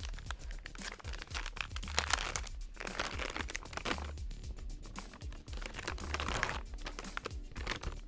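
Crinkling and rustling of a silvery plastic packaging bag being handled and opened around an avionics unit, over background music with a low beat about every two seconds.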